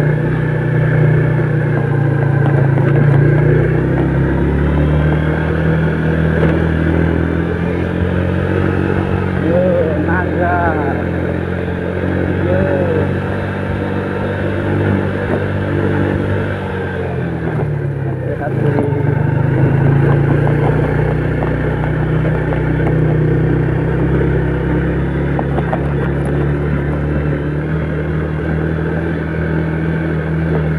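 Old Yamaha Vega four-stroke single-cylinder underbone motorcycle running along at steady cruising speed, heard from the rider's seat; the engine note drops briefly past the middle and then picks up again. A few short rising and falling sounds come in over it near the middle.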